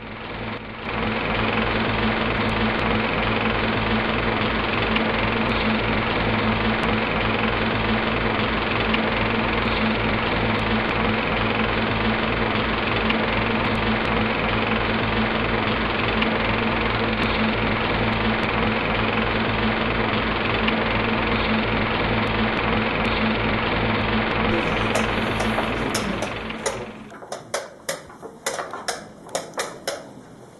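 A loud, steady, rapidly pulsing buzz with a low hum, fading out about 26 seconds in. It gives way to sharp, irregular clicks of a blitz chess game: pieces set down and chess clock buttons struck.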